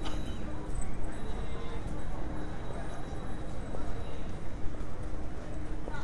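Pedestrian street ambience: background voices of passers-by and hard footsteps clacking on the pavement, with scattered short clicks.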